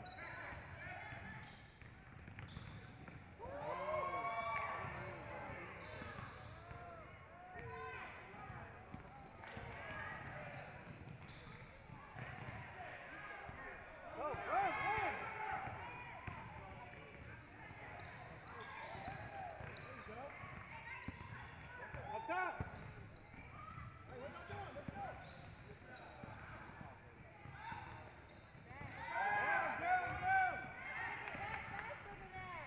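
Basketball play on a hardwood gym floor: sneakers squeaking in short clusters as players run and cut, over a basketball being dribbled, with the loudest runs of squeaks about four seconds in, midway and near the end.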